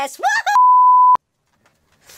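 Censor bleep: a single pure 1 kHz tone about half a second long, cutting in right after a burst of speech and stopping abruptly.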